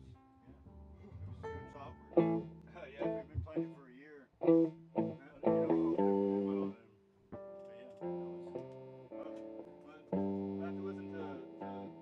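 Electric guitar played loosely: a run of single picked notes with bends, then three strummed chords each left to ring, about six, eight and ten seconds in.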